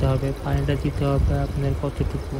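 A voice talking, with water trickling from a syringe into a lead-acid battery cell underneath it as the cell is topped up.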